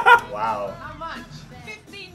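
Men laughing hard. The loudest laugh falls right at the start and trails off into quieter, high-pitched laughs over soft music from the film.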